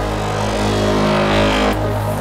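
Electronic breakbeat music with a steady bass drone, over which a rising noise sweep builds and then cuts off sharply near the end, as a build-up drops into the next section.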